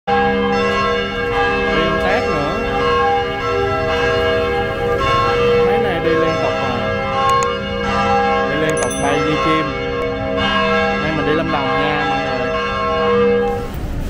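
Church bells ringing: several overlapping tones that hang on and are struck afresh every few seconds.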